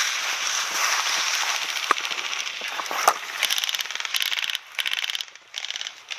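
Rustling of tall dry grass and brush as someone pushes through it. From about three seconds in, it changes to full-auto airsoft rifle fire: short bursts of rapid, evenly spaced shots.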